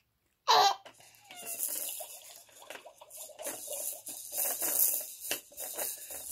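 A baby laughing and squealing in short bursts, starting with a sudden loud burst about half a second in, with rustling and handling noise throughout.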